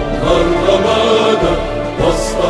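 Anthem sung by a choir over instrumental backing, in held chords, with a new chord coming in at the start and again at the end.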